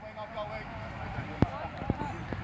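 Players' voices calling faintly across a grass sports field, over a low wind rumble on the microphone, with two sharp clicks about a second and a half and two seconds in.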